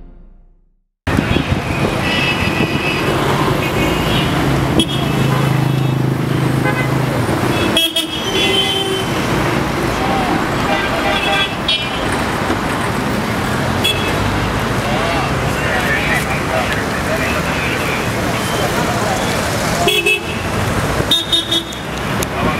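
City road traffic with engines running and short car-horn toots now and then, over a background of voices. The sound changes abruptly a few times.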